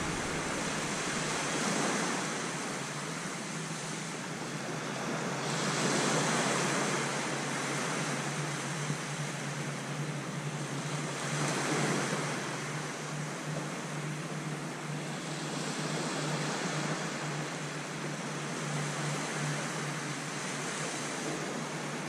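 Small waves breaking and washing up a sandy beach, the wash swelling and easing every few seconds.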